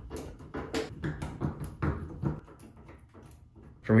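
Hand screwdriver turning out a Phillips screw from a dryer's sheet-metal front panel: a quick run of short clicks and creaks, several a second, dying away a little past halfway.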